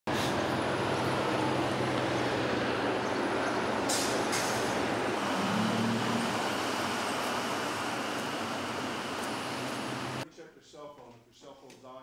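Steady street traffic noise with a low engine hum from a large vehicle, with two short hisses about four seconds in. It cuts off suddenly about ten seconds in.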